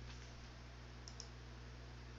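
A computer mouse button clicking twice in quick succession about a second in, over a steady low electrical hum and faint room noise.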